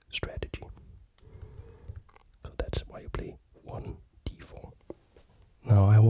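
Soft whispered speech, low and breathy, broken by a few faint clicks.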